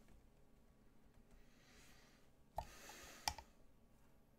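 Two sharp computer-mouse clicks about 0.7 s apart, a little over halfway through, with a brief hiss between them, as when a piece is moved in an online chess game. Otherwise near silence.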